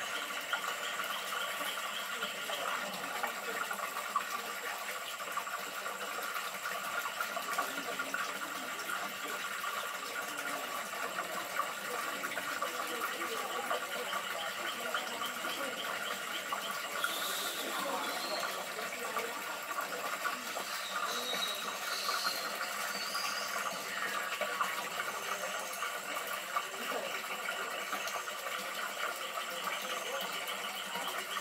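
Tropical rainforest insect chorus: several steady, pulsing buzzes layered at different pitches, with a few brief higher chirps partway through.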